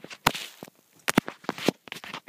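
A skateboard being handled and turned over close to the microphone: a quick series of sharp clicks and knocks.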